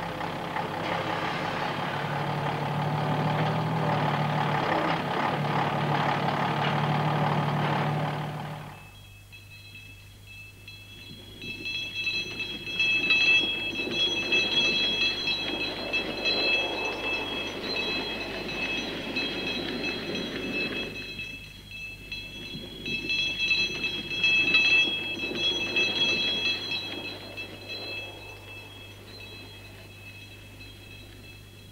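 Heavy diesel engine of a log truck with a loading crane running steadily for about the first nine seconds, then cutting off abruptly. After that comes a quieter, fluctuating sound with several high steady tones.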